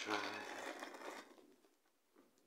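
A woman's voice drawing out the end of a word and trailing off about a second in, with a soft rustle of a bread roll being torn apart by hand.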